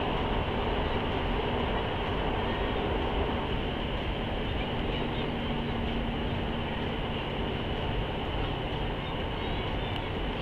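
Steady rumble and hiss of a moving vehicle heard from inside its cabin, with a faint low hum rising in for a couple of seconds around the middle.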